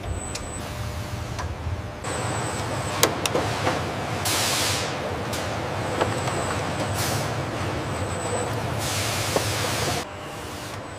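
Assembly-line machinery running steadily, with sharp clicks and a thin high whine that comes and goes. Two loud pneumatic air hisses, about four and nine seconds in.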